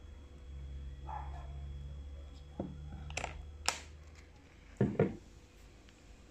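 A few sharp clicks and knocks over a low steady hum, the loudest a quick double knock about five seconds in.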